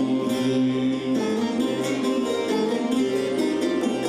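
Live Turkish folk music ensemble playing, led by bağlamas (long-necked saz lutes) with plucked strings over a steady repeating bass note.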